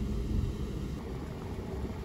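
Low, steady background rumble with no distinct event: room noise in the booth, with no bugle call sounding.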